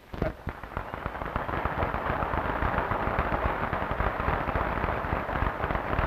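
Audience applauding, building up over the first couple of seconds and then holding steady.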